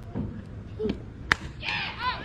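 A softball pitch reaching home plate with one sharp smack a little past a second in. High-pitched shouts from players and fans follow.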